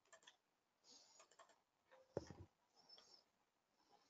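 Near silence with a few faint clicks from a computer mouse, and one soft thump about halfway through.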